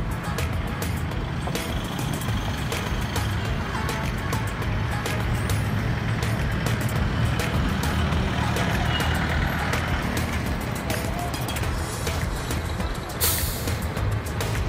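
Engine and road noise of a moving vehicle, a steady low rumble with small rattles, heard from on board. A short, loud hiss of air sounds near the end.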